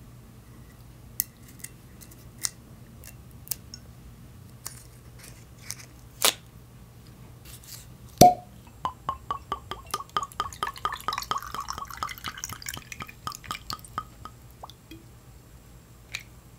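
Small scattered clicks and crackles as the seal on a Hennessy cognac bottle's stopper is worked loose, then the cork stopper pulled from the neck with one loud pop about eight seconds in. Cognac then glugs out of the bottle neck in quick pulses for about five seconds, poured over ice in a glass.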